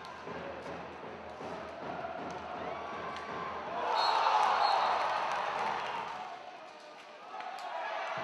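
Rink hockey arena crowd noise with scattered knocks of sticks and ball on the rink. About four seconds in, the crowd swells into a cheer with a short high whistle over it, then dies down.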